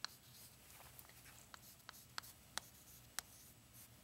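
Chalk writing on a chalkboard: faint scratching strokes broken by a series of sharp taps as the chalk strikes the board to form figures.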